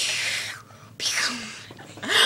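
A girl's breathy whispering in two bursts, the second starting about a second after the first.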